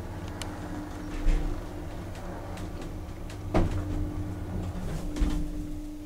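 Elevator car travelling downward: a steady low hum from the lift's drive with one constant tone, and a few short thumps about a second in, midway, and near the end.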